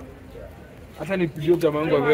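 A man's voice speaking, drawn out, starting about a second in over low street background noise.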